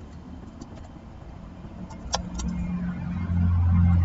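Low, steady engine drone that swells over about two seconds and cuts off just at the end, with a few faint taps before it.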